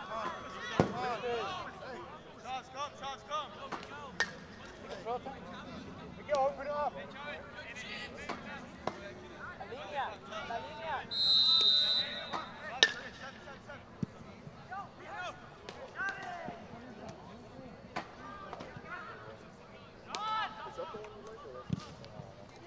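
A referee's whistle blown once about halfway through, a single steady high blast of about a second, over distant shouting from players and spectators on an open field. A sharp knock of a ball being kicked follows just after the whistle, with a few more scattered thumps.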